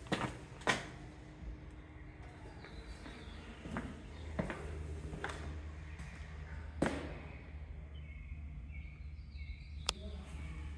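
Scattered footsteps and knocks on a concrete floor, a few seconds apart, over a steady low hum. Faint bird chirps come in near the end.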